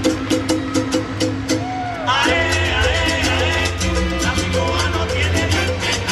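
Salsa music with a steady percussion beat over a bass line; a fuller band section joins about two seconds in.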